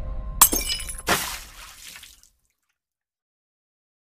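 Intro music cut off by two sharp crash sound effects about a second apart, glass-like, with a high ringing that fades out within about a second; then dead silence.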